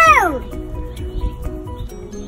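A young girl's high, arching cry at the very start, fading within half a second, over quiet background music of held notes.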